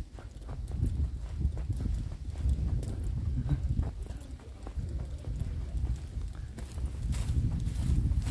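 Footsteps of someone walking on a hard path, a run of short clicks over a low steady rumble on the microphone.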